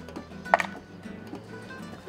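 Background music, with one sharp crack about half a second in as a cooked lobster's shell is broken apart by hand.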